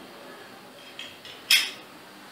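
Metal lid and base of a hookah heat-management device clinking against each other as they are handled and fitted together: a small click about a second in, then a sharper metallic clink half a second later.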